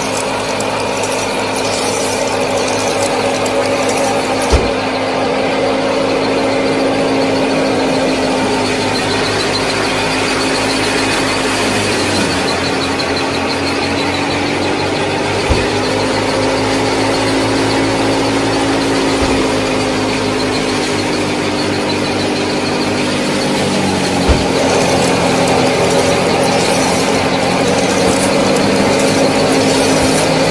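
Small motor driving a miniature wheat thresher, running steadily with a whine. Its pitch sags about twelve seconds in, wavers, and settles again just after twenty-four seconds in, with a few sharp clicks along the way.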